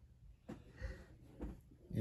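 A few short, faint breath sounds from a woman having her nostril pierced through a forceps clamp, just as the needle goes in.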